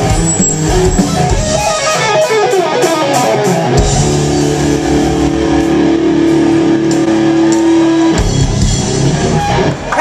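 Live hard rock band playing loud: distorted electric guitars, bass and drums. About four seconds in, a chord is held and rings steadily for about four seconds before the band goes back into busier playing.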